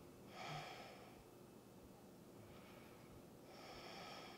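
Faint breathing through the nose, two slow breaths: one about half a second in, the other starting near the end, over near-silent room tone.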